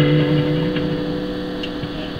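A strummed guitar chord left ringing, its notes holding steady while it slowly fades.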